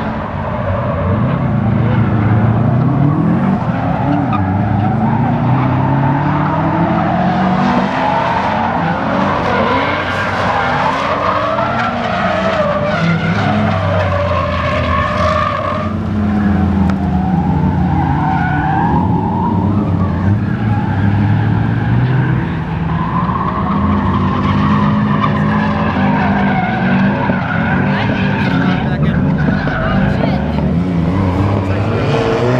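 Drift cars' engines revving up and falling back again and again while their tyres squeal and skid as the cars slide sideways through the course.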